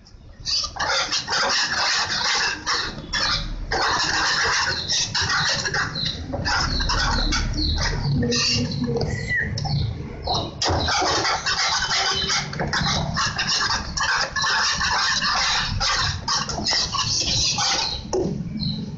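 Wire whisk beating a thick chocolate cream mixture in a metal pan, the wires scraping and squeaking against the pan in rapid strokes with brief pauses.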